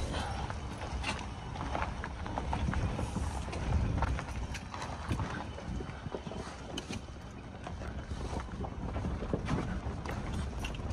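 Pickup truck rolling slowly over a rocky dirt trail: tyres crunching over loose rocks with many irregular clicks and knocks, over a steady low rumble of engine and road.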